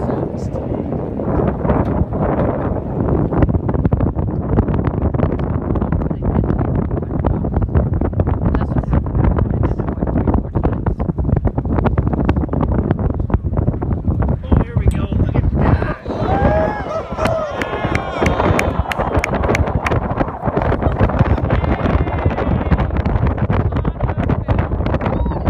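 Wind buffeting the microphone on a boat's open deck: a steady, loud rumbling rush with crackles. A few voices exclaim briefly about two-thirds of the way through.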